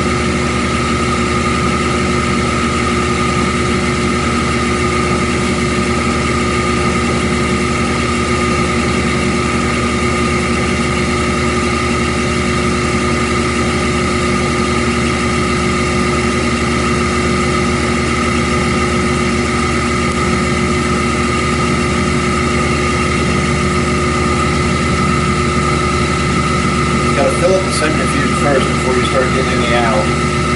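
Electric oil centrifuge spinning at full speed (about 6,000 RPM), a steady whine with several held tones over a low hum. It is spinning old diesel fuel to throw out water and sediment.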